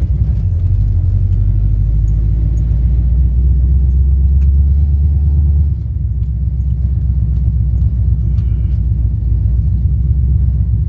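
The 1966 Ford Fairlane 500's Holley Sniper-injected 351 V8 running steadily, heard inside the cabin as a loud, low rumble. It drops a little in level about six seconds in.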